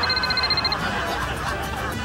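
Mobile phone ringing from inside a cup of popcorn: a rapid electronic trill that rings for about the first second and then stops, over crowd chatter.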